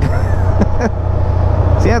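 Can-Am Spyder RT's V-twin engine running steadily under way, running smoothly. A short laugh comes near the end.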